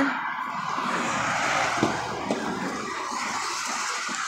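Steady rushing noise of road traffic that eases slightly after a couple of seconds, with two faint clicks near the middle.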